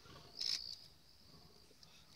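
Night insects, crickets, trilling steadily at a high pitch, with a brief louder burst about half a second in.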